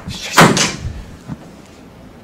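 A single loud knock about half a second in, dying away within half a second, followed by a fainter tap.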